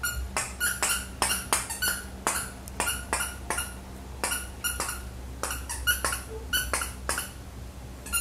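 A toy poodle's claws clicking on a tiled floor as it walks, a quick irregular run of sharp clicks, about three or four a second.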